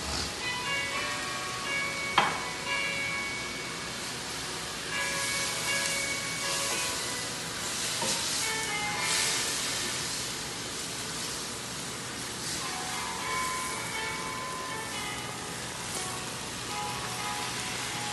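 Vegetables sizzling as they are stir-fried in a non-stick wok, the sizzle surging louder for a few seconds midway as they are tossed, with a sharp clink about two seconds in. Soft background music plays underneath.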